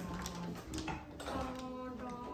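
A marble rolling down a popsicle-stick marble run, giving a few faint light clicks and rattles as it runs along the wooden craft-stick track. Background music plays along with it.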